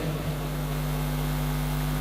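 Steady electrical hum from a sound system: a low drone of a few fixed tones over a faint even hiss.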